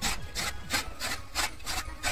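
Hand-cranked chaff cutter chopping green fodder: the flywheel's blades slice through the stalks in quick repeated strokes, about three a second.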